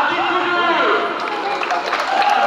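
Stadium public-address announcer's voice introducing a player in the starting lineup.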